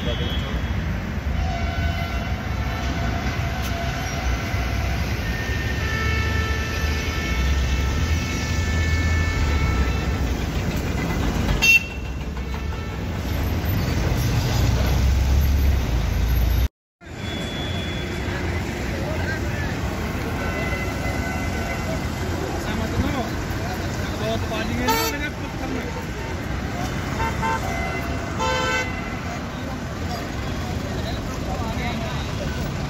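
Vehicle horns sounding long steady toots, several overlapping, over a heavy low traffic rumble. The sound drops out briefly about 17 seconds in, and more honking follows.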